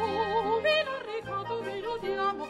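A woman singing an operetta number in a trained, operatic voice with wide vibrato, over a steady instrumental accompaniment.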